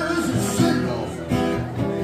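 Live solo acoustic guitar, strummed steadily, with a man singing over it.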